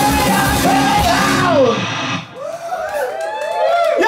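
A live punk rock band with electric guitar, bass, drums and singing. It stops short just before halfway for a break filled with short rising-and-falling pitched swoops, then comes crashing back in at the end.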